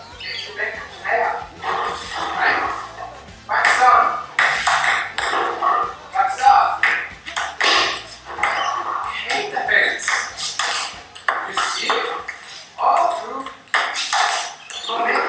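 Table tennis ball being hit back and forth, a string of sharp irregular clicks, over voices and background music.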